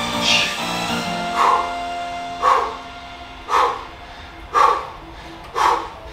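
Background music with short, forceful exhalations about once a second from a man working through alternating dumbbell biceps curls. The music quietens about halfway through and the breaths stand out.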